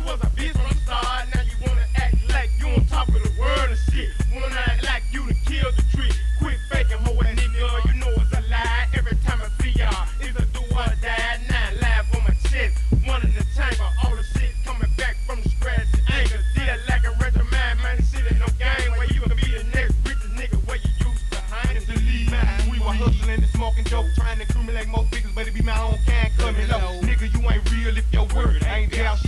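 1990s Memphis rap music: rapping over a beat with a heavy, steady bass.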